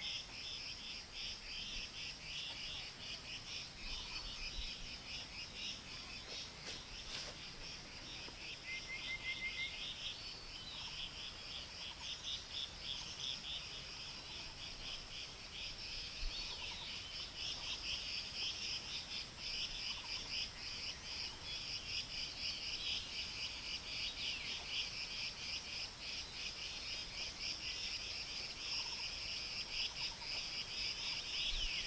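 A chorus of insects chirring without a break: a steady high-pitched buzz with a faster, rapidly pulsing layer just beneath it.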